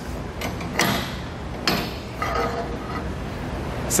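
Steel pipe cheater bar being worked off the handle of a lever-type chain binder: metal scraping about a second in, then a sharp metallic knock.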